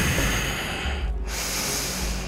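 A woman breathing out audibly after an effortful hold, two long, breathy exhales with a short break about a second in.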